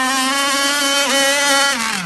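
Chainsaw-derived two-stroke petrol engine of an RC powerboat running flat out at a steady high pitch as the boat races across the water. The pitch falls near the end.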